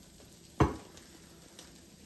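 One sharp knock a little past the middle, a metal food can being picked up off the countertop, over faint sizzling of ground beef frying in an enamelled cast iron Dutch oven.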